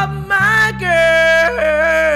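A man's voice singing a long held note with vibrato, dipping slightly in pitch about one and a half seconds in. Beneath it an electric bass guitar holds a steady low note.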